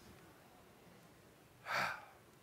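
A man's short, sharp intake of breath close to a handheld microphone, once near the end, after more than a second of quiet.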